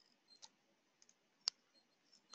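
Computer mouse clicking: a faint click about half a second in, then one sharper, louder click about a second and a half in.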